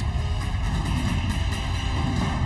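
Dramatic documentary background music over a steady, deep low rumble.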